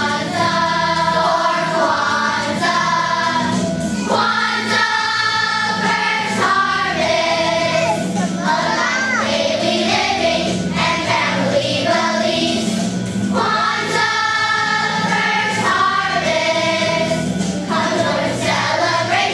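Children's choir singing together, with held notes that change every second or so.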